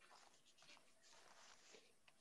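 Near silence, with faint pen-on-paper scratching in short strokes.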